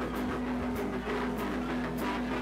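A live band playing, with electric guitars holding a sustained chord and a cymbal struck on a steady beat about every 0.6 s.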